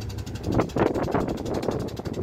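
Wind buffeting the microphone over the steady low rumble of a ship under way, with a gustier stretch about half a second in.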